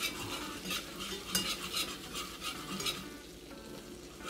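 Wire whisk stirring flour into bubbling melted butter in an enamelled pot to make a roux: the whisk's wires scrape and click against the pot in quick, uneven strokes over a faint sizzle.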